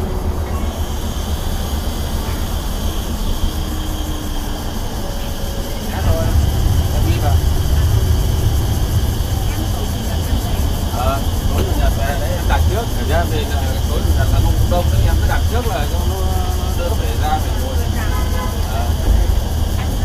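Cabin noise of a coach bus running at highway speed: a steady low engine and road rumble that grows heavier about six seconds in, with faint talk underneath.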